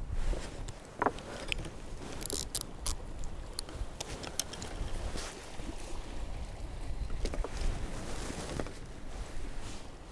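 Wind rumbling on the microphone, with scattered clicks and knocks of shingle pebbles and fishing tackle being handled, a short flurry of them a couple of seconds in.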